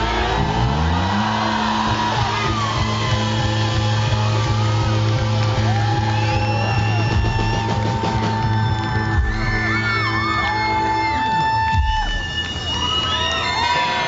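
Live band music ending on a long held low bass note that slides up at the start and drops away near the end, under crowd yells and whoops and high sliding tones.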